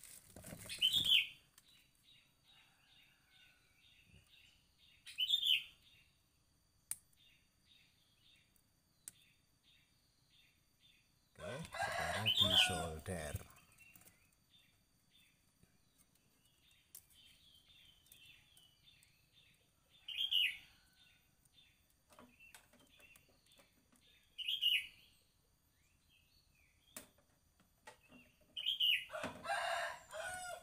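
Chickens and small birds calling in the background: short high chirps recurring every few seconds, and a louder, longer call about twelve seconds in. Faint clicks sound between the calls.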